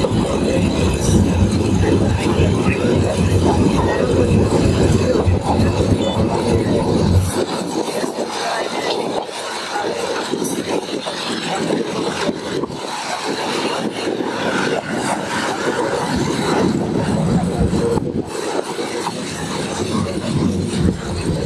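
Bangladesh Railway passenger train running, heard from on board: a steady rattle and rumble of the carriage on the rails. The deep part of the rumble drops away suddenly about seven seconds in.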